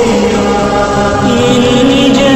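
Hindu devotional song: a chorus of voices chanting in long held notes over musical accompaniment, with a higher wavering part coming in about halfway through.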